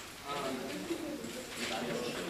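Marker pen writing on a whiteboard: faint squeaks and scratchy strokes as the words are written.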